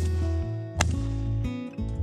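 Strummed acoustic-guitar background music with a steady bass, over which a shotgun fires twice: one sharp report right at the start and a second nearly a second later, shots that miss a flushed bird.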